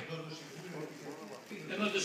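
A man's voice only: he draws out a wavering hesitation sound between words, then goes on speaking near the end.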